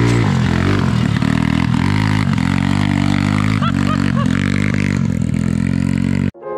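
Small engine of an off-road go-kart running under load, its pitch repeatedly dropping and rising again as the throttle is worked, with a few short high chirps just past halfway.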